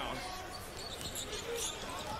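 Faint audio of a televised basketball game: a ball bouncing on the hardwood court under a low murmur of arena crowd and a commentator's voice.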